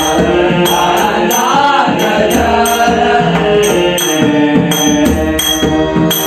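Devotional bhajan music: a man singing a wavering abhang melody over sustained harmonium chords. Small hand cymbals (taal) keep a steady jingling beat, with low strokes from a two-headed barrel drum.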